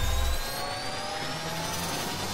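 Rising whoosh sound effect from a logo animation: several tones glide slowly upward over a steady hiss, with a low rumble that falls away about half a second in.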